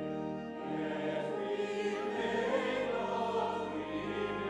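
Church organ playing sustained chords while voices sing.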